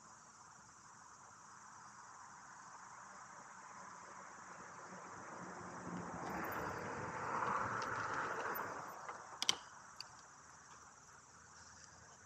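Steady high chirring of insects, with the rolling hum of a RadRover fat-tire electric bike on asphalt growing louder as it approaches, loudest about two-thirds of the way through, then dying away. A couple of sharp clicks follow shortly after.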